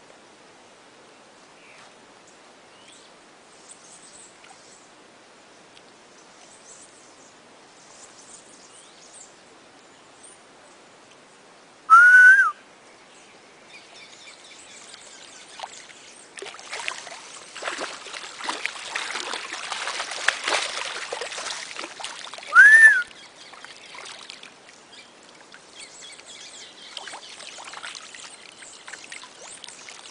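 Water splashing and churning in the shallows as a caiman thrashes, which the filmers put down to shocks from an electric eel, building over several seconds in the second half. Two loud, short rising whistles, about eleven seconds apart, and faint bird chirps are heard as well.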